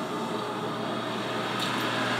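Steady hum and hiss of a car's interior while the car idles, with no sudden events.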